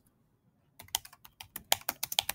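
Typing on a computer keyboard: a quick, irregular run of key clicks that starts about a second in, after a short silence.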